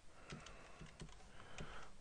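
Computer keyboard typing: a run of faint, separate keystrokes, about seven in two seconds.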